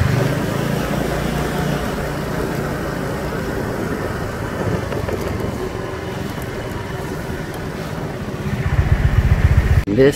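Small motorbike engine running at low speed, with wind noise on the microphone; a rapid low pulsing near the end.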